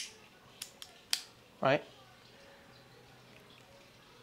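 A sharp click as the action camera's cage snaps onto a magnetic quick-release mount, then a few lighter clicks of the mount being handled within the next second.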